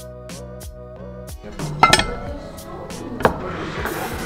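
Background music with a regular beat, which gives way about a second and a half in to sounds of dishes on a table. Two sharp clinks stand out, from plates and cutlery being handled on a wooden table.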